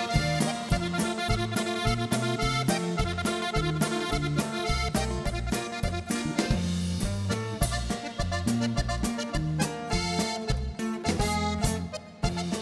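Norteño band music: a Cantabella Rustica accordion leads an instrumental passage over an alternating bass line and a steady drum beat.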